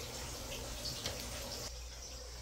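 Faint, steady background hiss of room noise with no distinct events, dropping a little near the end.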